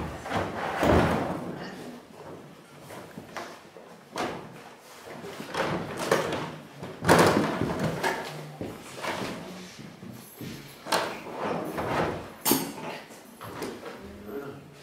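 A large round plastic hard case being handled: its lid lifted, tipped and knocked, with scraping and rummaging inside. An irregular string of knocks, scrapes and bangs, the loudest about seven seconds in.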